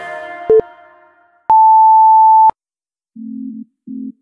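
Background music fades out, then an interval timer gives one loud, steady electronic beep lasting about a second, marking the end of the exercise interval and the start of the rest. A short blip comes just before it, and new synth music starts near the end.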